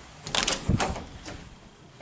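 A closet door being opened: a quick run of sharp clicks from the knob and latch, with a dull knock, about half a second in.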